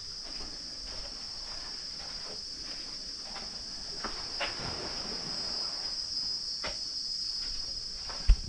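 Steady high-pitched drone of a tropical insect chorus, with a few faint knocks about four and a half and six and a half seconds in.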